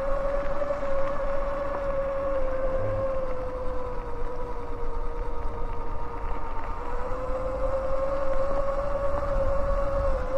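Sur-Ron X electric dirt bike's motor whining steadily under way, one high tone over a low rumble. Its pitch sags slightly past the middle and rises again about seven seconds in as the bike picks up speed.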